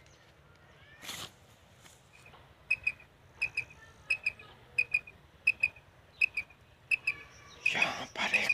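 Hand-held quail caller (tabcha) worked to imitate a quail's call. From about two and a half seconds in, it gives short groups of two or three sharp, high whistled notes, repeated about every two-thirds of a second.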